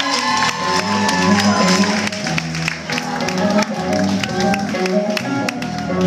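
Live rock band playing electric guitars and drums through a club PA, with a repeating bass line and steady drum strokes.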